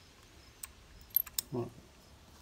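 A few small, sharp clicks of a car power antenna assembly being handled, its metal and plastic parts knocking together, bunched just past the middle.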